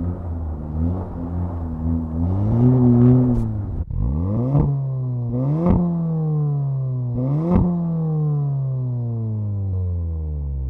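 2018 VW Golf R's turbocharged four-cylinder engine heard from inside the cabin, its revs rising and falling while driving on ice. About four seconds in, the sound cuts to the engine revving up twice in quick pulls, with three sharp cracks, then the revs slowly falling away.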